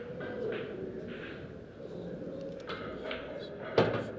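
English pool shot: one sharp click near the end as the cue strikes the cue ball and the balls make contact, over quiet room murmur.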